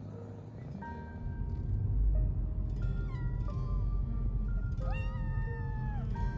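A ginger cat meowing twice from inside a pet carrier, a shorter meow about halfway through and a longer one near the end that rises and then holds. The cat is frightened at being shut in the carrier for a long trip.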